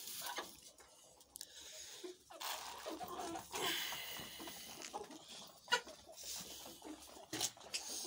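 Pelleted chicken fattening feed pattering out of a plastic bag into a round feeder, with sharp taps of chickens pecking at the pellets.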